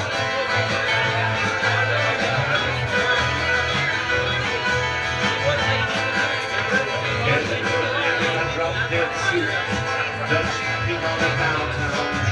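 Live acoustic folk band playing an instrumental passage: strummed acoustic guitars over a steady, pulsing low bass beat.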